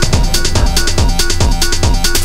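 Tech house dance track: a steady four-on-the-floor kick drum at about two beats a second, fast hi-hats and short stabbed synth chords.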